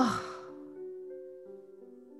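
A woman's dismayed "oh" falling in pitch and trailing off into a breathy sigh in the first half second. After it comes soft background music of slow, held notes.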